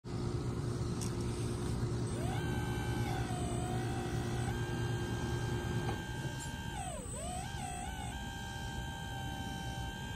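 Small electric motors of a Volvo RC excavator whining as the boom, arm and bucket move, over a steady low hum. The whine rises in about two seconds in and holds. It stops, then comes back with a dip and a wavering pitch as the movements change.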